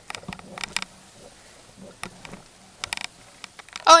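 Handling noise from a camera tripod being adjusted: irregular clicks and knocks, a few in quick clusters, over a faint low hum.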